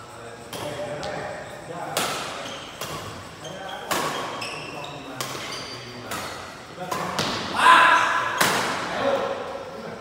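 Badminton rackets striking the shuttlecock in a fast doubles rally: about eight sharp smacks, roughly one a second, echoing in the hall, with short high squeaks between hits. A voice calls out loudly just before the last hit.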